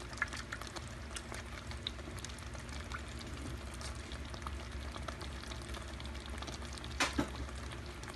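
Beef and baby corn in a thick oyster-sauce gravy simmering in a pan, with faint scattered pops and crackles over a low steady hum. A single sharp click comes about seven seconds in.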